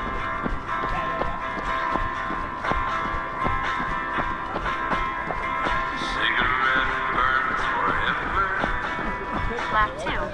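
Running footsteps on a gravel road at about three strides a second, over music with steady held tones; a wavering voice-like sound joins about six seconds in.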